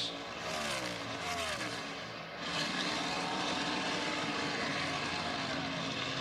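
NASCAR Cup Series stock car's V8 engine going past at full speed, its pitch falling as it passes. From about two and a half seconds in, a steadier engine drone follows as more cars run by.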